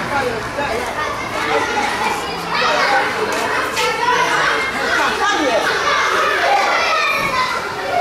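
Many schoolchildren's voices overlapping as they play, chatter and call out.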